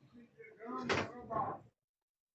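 Faint, distant-sounding voice with a single short knock about a second in.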